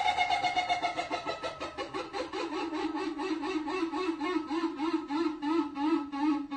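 Wall-mounted electric fan running with a rhythmic warbling squeal, about four to five pulses a second, its pitch wobbling with each pulse.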